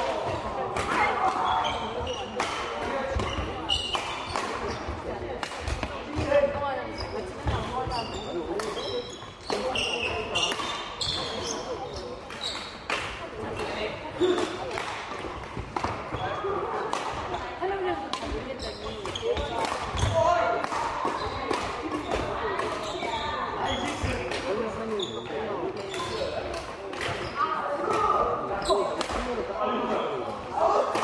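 Badminton rackets striking shuttlecocks in rallies on several courts, giving many sharp, irregular hits, over indistinct chatter echoing in a large sports hall.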